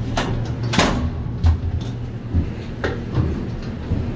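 A few short, sharp knocks, as of footsteps and handling inside an elevator car, over a steady low hum.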